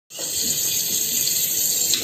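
Kitchen tap running steadily into a sink, heard through a screen's speakers.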